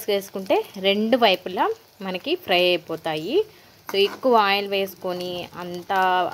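Battered egg pakoda frying in hot oil in a kadai, a steady sizzle under a voice talking, which is the loudest sound.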